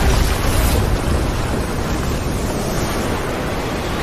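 Cinematic sound effect of a massive energy blast: a loud, rushing rumble that slowly dies away.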